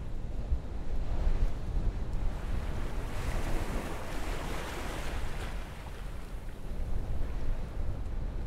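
Breaking surf with a low, wind-like rumble beneath it. The wash of the waves swells about three seconds in and eases back after about five and a half seconds.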